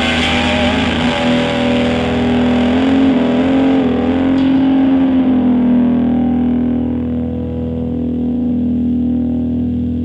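Distorted electric guitar holding long, sustained notes with wavering vibrato and bends, over a steady low accompaniment; from about halfway the sound grows duller and eases off slightly, as the song winds down.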